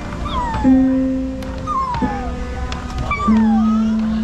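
Musical 'piano' stairs sounding a held electronic note for each step, a new note about every second and a half, each a little lower than the one before, as someone walks down. Short high cries that fall in pitch sound over the notes.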